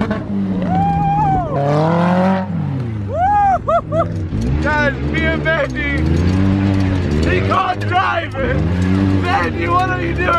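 Dune buggy engine running hard, its pitch rising and falling as it revs, under loud whooping and laughing from the riders.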